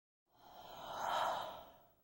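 A soft whoosh sound effect, a rush of noise that swells to a peak about a second in and then fades away.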